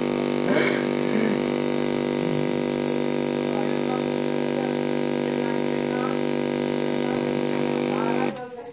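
A computer's speakers stuck on one loud, steady, unchanging buzz: the audio has frozen on a Windows blue-screen crash, looping a tiny fragment of the Dolby 7.1 trailer that was playing.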